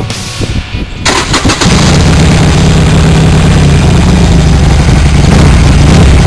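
Motorcycle engine cranked on its electric starter about a second in, catching within about half a second and then idling steadily.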